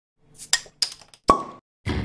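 A few sharp pops and clicks, ending in a louder clink with a brief ring about a second in. Then a beat-heavy music track starts just before the end.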